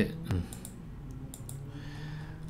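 A few scattered clicks of a computer mouse.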